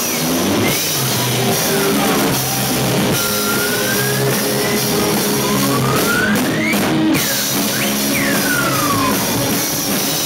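Live rock band playing with electric guitars and drums, steady and loud, with high tones gliding up and down several times over held low chords.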